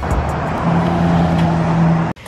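Road noise of a car driving, an even rush with a steady low engine hum that sets in about half a second in.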